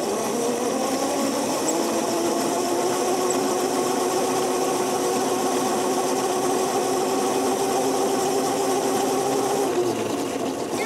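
Electric motor of a Razor go-kart whining steadily at speed, rising in pitch over the first second or two as it speeds up, then holding level and dropping away near the end, with steady tyre and wind hiss underneath.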